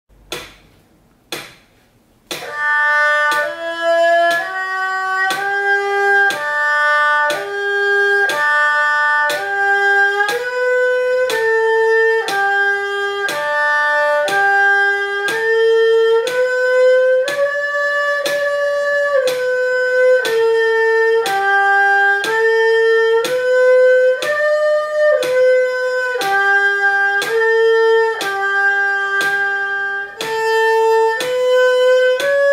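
Erhu bowed solo, playing a slow D-key position-shifting exercise: about one sustained note per second, stepping cleanly between pitches with no slides between positions. Two short clicks come first, and the playing starts about two seconds in.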